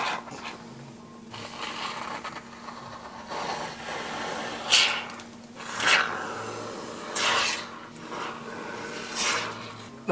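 Can of PU adhesive hissing and sputtering as it is squirted through drilled holes into the back of a car dashboard, in several louder spurts about halfway through and near the end.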